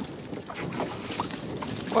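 Wind and river water noise around a small fishing boat, with brief faint voices in the background.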